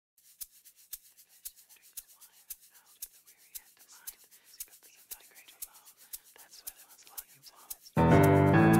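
Quiet, even ticking, about two ticks a second, with faint whispering voices underneath: the opening of the song before the full band comes in.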